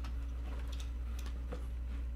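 A few faint clicks and taps from a Rollei SL26 camera being handled and turned over in the hands, over a steady low electrical hum.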